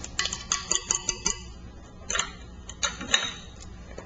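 Light, irregular clicks and taps of a kitchen utensil against a mixing bowl, several close together in the first second and a few more later, over a low steady hum.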